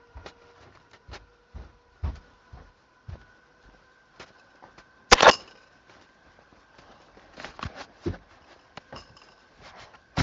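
Scattered soft knocks and rustles of a handheld camera being moved about with the lens covered, with one louder knock about five seconds in, over a faint steady hum.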